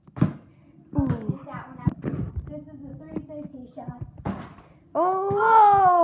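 Boys' voices with a few sharp knocks scattered through, then a loud, drawn-out yell from a boy starting about five seconds in.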